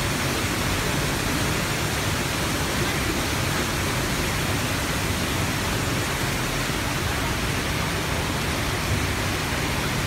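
Water of a waterfall-fed mountain stream rushing over boulders in a steady, even rush.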